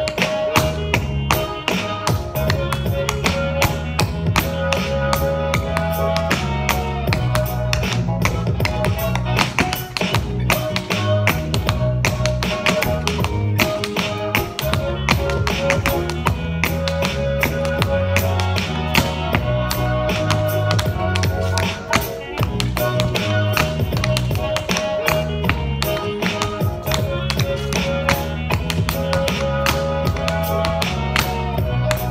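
Tap shoes striking a wooden tap board in quick, dense rhythmic steps of the Shim Sham routine at a fast tempo, played over recorded music with a stepping bass line and a sustained melody.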